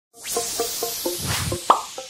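Short electronic logo sting: a rising airy whoosh under a quick run of short plucked notes, about four a second, ending on a brighter accent near the end.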